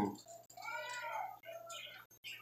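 A child calling out faintly from another room: one drawn-out high call that rises and falls in pitch, followed by a few shorter faint sounds.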